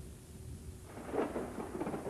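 Thunder rumbling low, swelling into a louder crash about a second in.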